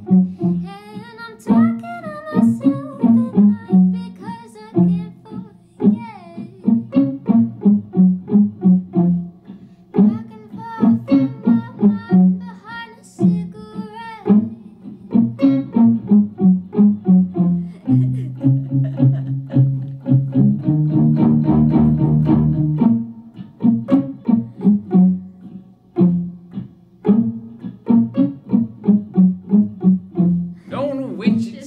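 Banjo ukulele played through its transducer pickup into an Electro-Harmonix Micro POG octave pedal and a Mesa 5:25 amp, with rapid picked notes and, just past the middle, a few seconds of held, lower chords. A woman's voice sings along in places.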